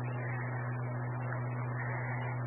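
Steady electrical hum with a low hiss on an open amateur radio repeater channel, with no voice on it.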